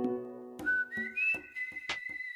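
Electronic closing sound logo: a low chord dies away under a few sharp clicks, while a high whistle-like tone enters, steps up and down in pitch, then holds steady.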